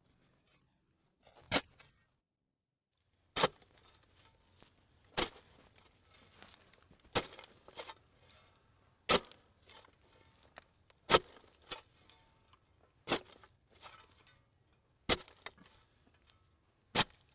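Sharp knocks at a steady pace, about one every two seconds, with fainter clicks and rustles between them.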